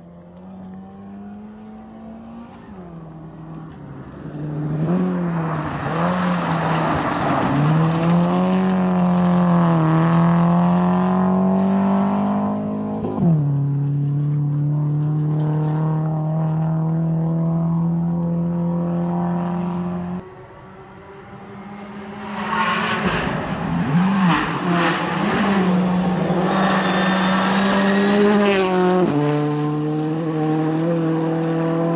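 Rally cars driven flat out on a gravel stage. The engine note climbs and falls and steps with gear changes, over the noise of tyres on gravel. The sound comes as two loud passes, broken by a sudden drop about two-thirds of the way through.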